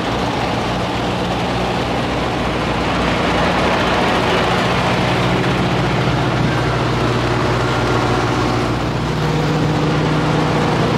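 Diesel engines of parked semi trucks idling, a steady low drone. It grows a little louder about three seconds in, and the pitch of the hum shifts around six and a half and again nine seconds in.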